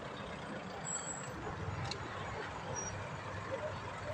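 Steady low rumble of motor vehicles driving slowly past, with a single click near two seconds in.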